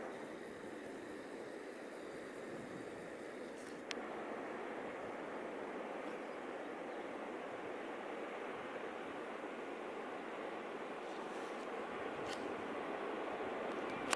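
Steady outdoor background hiss with no distinct source, with a single click about four seconds in, after which the hiss is slightly louder.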